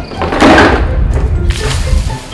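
A bucketful of water dumped from an upper window, splashing down onto a person below, with a second, shorter splash near the end, over background music.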